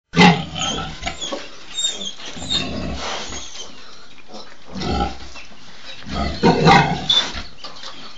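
A nursing sow and her piglets squealing and grunting in irregular loud bursts, the loudest right at the start and about six and a half seconds in. The sow's cries are taken by the uploader for pain from the piglets suckling roughly.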